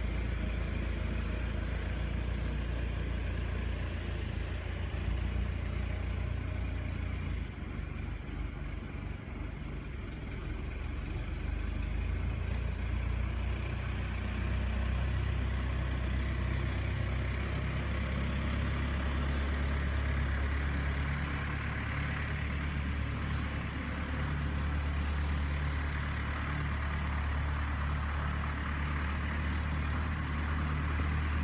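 Steady low drone of an idling engine, unchanging throughout.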